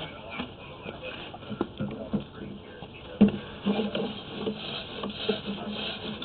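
Sewer inspection camera's push cable being pulled back out of the line: irregular rubbing and scraping with scattered clicks and knocks, one sharper knock a little past halfway.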